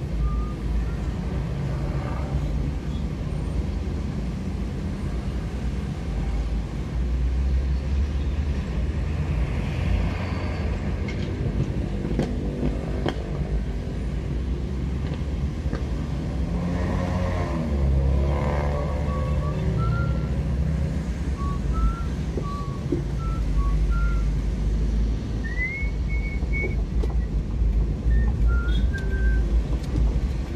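Motorcycle and car engines in slow, congested traffic, a steady low engine rumble close by. An engine note swells in the middle, and short high chirps come and go in the second half.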